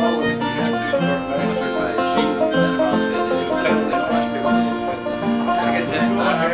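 Small acoustic string band playing a country tune: banjo picking over strummed acoustic guitar, with harmonica notes held above.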